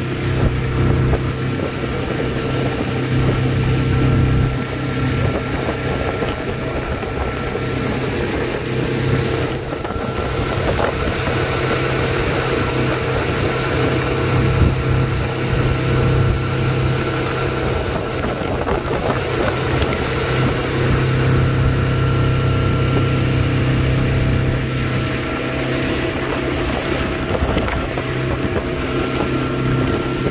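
Motorboat running at steady cruising speed: a constant engine drone with water rushing along the hull and wind buffeting the microphone. For several seconds in the middle the engine hum sinks under the louder rush of the churning wake.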